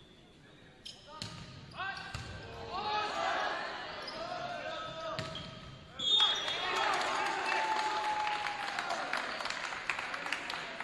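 A volleyball rally in a large gymnasium: a few sharp smacks of the ball being hit, with players shouting calls. About six seconds in, the shouting gets louder as the point is won.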